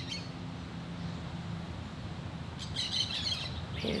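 Birds chirping over a steady background hiss, with a short burst of high chirps about three seconds in.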